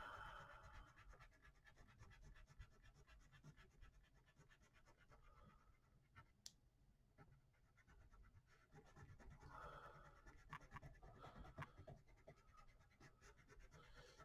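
Faint scratching of a thin drawing tool on paper, in a short stretch at the start and again for a few seconds near the end, with one light click about halfway through.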